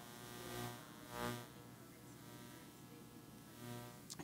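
A woman in the audience asking a question, faint and distant, heard off the microphone over room tone.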